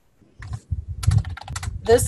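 Typing on a computer keyboard: a quick run of key clicks starting about half a second in.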